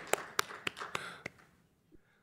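Scattered hand claps from the last of an audience's applause, a few sharp claps about a quarter second apart that thin out and stop a little over a second in.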